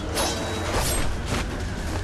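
Film fight-scene sound effects: three quick whooshes of swings, about half a second apart, over background music.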